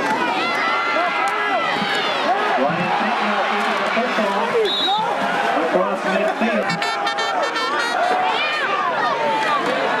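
Football crowd in the stands cheering and shouting, many voices overlapping at once. About seven seconds in there is a rapid clattering that lasts about a second.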